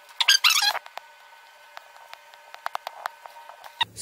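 Paper booklets and cardboard being handled: a short, loud rustle near the start, then scattered light clicks and taps as papers are lifted out of the box.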